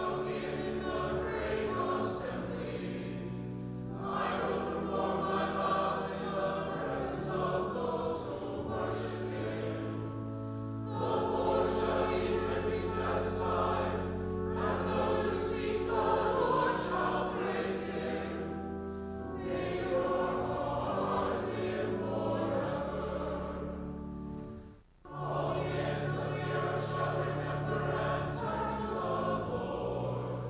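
Church choir singing the psalm between the readings over long held organ notes, phrase by phrase, with a short break near the end before the next verse begins.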